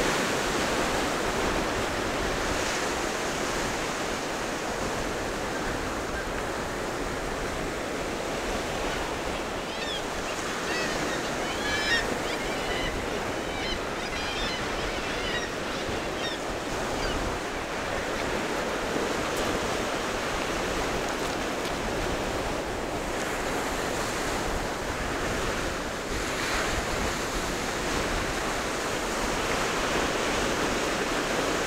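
Sea waves breaking and washing up a sandy, shingly beach: a steady surf noise. A few short, high chirps come through in the middle.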